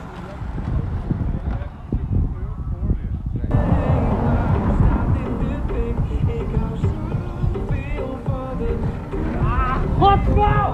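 Wind buffeting the microphone with a low rumble for the first three seconds or so. Then music starts abruptly, with the wind rumble still under it and a voice near the end.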